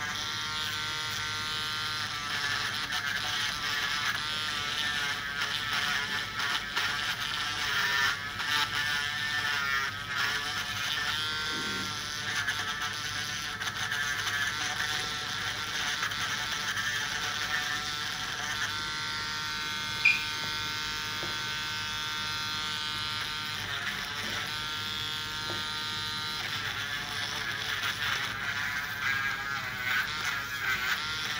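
Electric podiatry nail drill grinding down a thick fungal toenail with a rotary burr: a continuous high whine whose pitch wavers as the burr presses on the nail. One sharp click about 20 seconds in.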